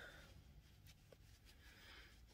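Near silence: room tone, with a faint tick about a second in.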